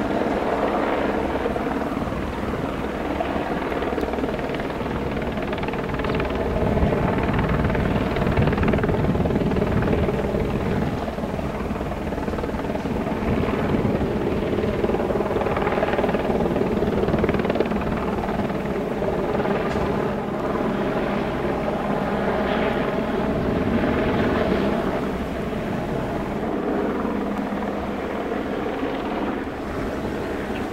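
Helicopter flying overhead: a loud, steady rotor and engine drone that swells and fades a little every few seconds. It cuts in abruptly at the start.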